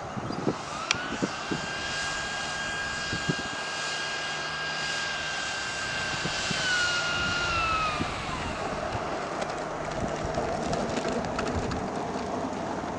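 Electric ducted-fan whine from the model jet's Tamjets TJ80SE fan and Neu 1509 motor while it taxis, rising about half a second in, then holding a steady high pitch. In the second half it steps down and falls to a lower whine as the throttle comes back.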